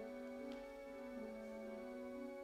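Pipe organ playing slow, sustained chords, each note held steadily while the inner voices move from note to note. A single faint click about half a second in.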